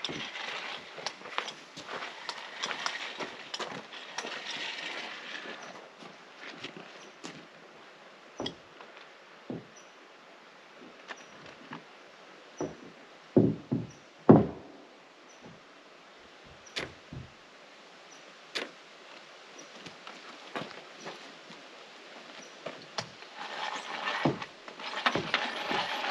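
A chalk line stretched along the wall framing and snapped, giving a few dull thumps about halfway through, amid scattered light knocks on the wooden deck. A soft hiss runs through the first several seconds and comes back near the end.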